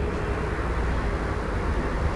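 Steady low background rumble with an even hiss above it, with no clear events.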